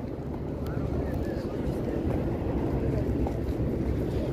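Steady low outdoor rumble with faint distant voices, without any distinct single event.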